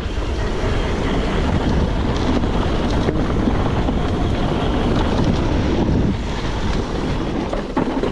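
Wind rushing over the camera microphone of a mountain bike ridden fast down dirt singletrack, mixed with the noise of the tyres rolling on the dirt. The noise eases a little about six seconds in.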